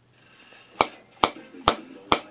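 A round snuff tin being tapped three times: sharp, evenly spaced taps about half a second apart, the way a tin of dip is tapped to pack the tobacco before it is opened.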